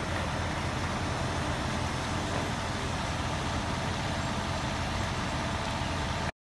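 Heavy truck diesel engines, from recovery trucks and a mobile crane, running steadily in a low drone that does not change.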